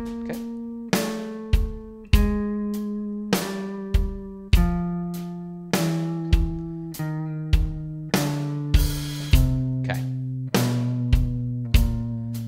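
Clean electric guitar playing a slow warm-up exercise over a drum beat at 50 BPM, one picked note on each beat, about every 1.2 seconds. Each note rings until the next, and the notes step gradually down in pitch.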